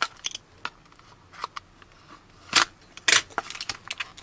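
Scattered sharp clicks and snips from scissors cutting tape and a plastic toy capsule being handled, the loudest a little over halfway through and again about three seconds in.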